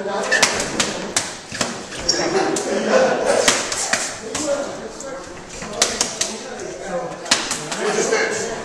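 Quick, uneven smacks of hand strikes landing on padded gloves held up as targets, a dozen or so over the stretch, with an indistinct man's voice underneath.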